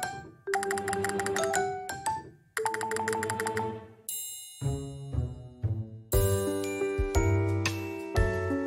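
Background music: a light tune of struck, chiming notes, with a low pulsing bass coming in about halfway through.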